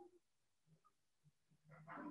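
Near silence: quiet room tone of a video call, with a couple of faint, brief sounds near the start and just before the end.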